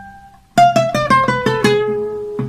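Requinto picked with a plectrum: the last note of a rising run dies away, then about half a second in a quick falling run of about eight notes follows, ending on a held note. It is an adorno, the ornamental fill of a pasillo.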